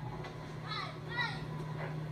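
Young fielders shouting short, high-pitched calls on a pop-up, two quick shouts about a second in, over a steady low hum. These are the players calling for the ball to claim priority.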